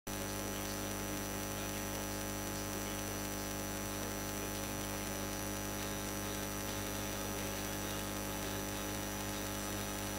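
Steady electrical mains hum and buzz with a faint high-pitched whine, unchanging throughout.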